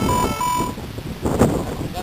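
A short electronic beep pattern: four tones alternating high and low, the last one held longest, lasting under a second.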